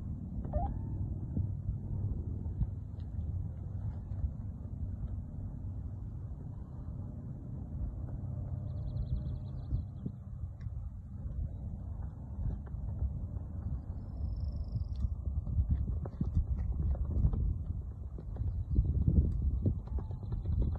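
Wind buffeting the microphone: a low, uneven rumble in gusts that grows stronger near the end. A couple of faint, short high chirps sound in the middle.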